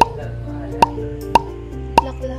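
Background music: a light tune of held notes with four short percussive hits spread through it.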